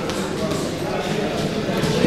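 Indistinct voices over a steady background din in a boxing gym.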